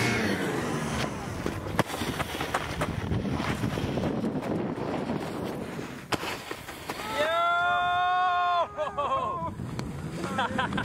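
Snowboard sliding and scraping over packed snow, with wind on the microphone. About seven seconds in, a person lets out a long held yell of about a second and a half, then a shorter shout.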